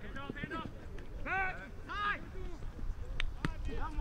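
Men shouting short calls during a flag football play, several in the first half, then two sharp clicks about three seconds in.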